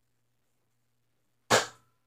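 A single sharp smack or bang about one and a half seconds in, dying away quickly, after near silence.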